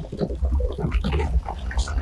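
Film sound effects: monstrous growling and snarling, a dense run of short rasping grunts, over a deep steady rumble.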